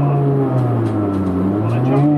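Honda B18C4 1.8-litre VTEC inline-four of a Civic EG, heard from inside the cabin as the car slows. Its drone dips in pitch through the middle and climbs slightly near the end. Music with vocals plays along with it.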